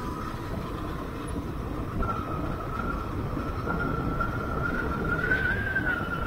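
Motorcycle on the move at about 50 km/h: wind rumble on the microphone over the running engine, with a steady high whine that rises a little about five seconds in.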